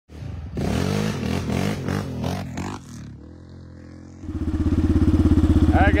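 Yamaha Raptor 700R quad's single-cylinder engine revving in a few throttle blips that rise and fall. After a short quieter stretch, it idles close by from about four seconds in with a loud, fast, even throb.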